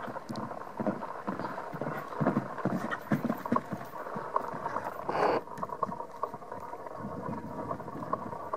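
Hoofbeats of a ridden mare loping over grass and loose dirt: irregular dull thuds. There is a brief louder rush of noise about five seconds in.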